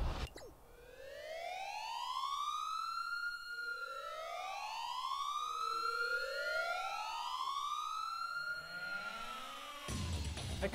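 Siren wailing: slow rising-and-falling wails that overlap, a new one starting every two to three seconds.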